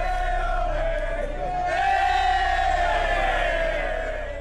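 A group of people cheering and shouting together, with long held yells.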